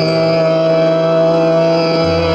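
Male Hindustani khyal voice holding one long, steady note in Raag Ahir Bhairav, the pitch level after a sliding ornament just before.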